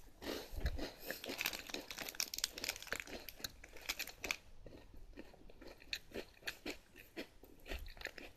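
Close-up chewing of a Meiji Takenoko no Sato strawberry-white chocolate cookie, its thick cookie base crunching between the teeth. The crunches are densest in the first few seconds, then thin out to scattered soft bites.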